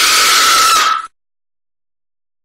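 Jump-scare screamer sound: a loud, harsh scream held on one shrill pitch, which cuts off suddenly about a second in.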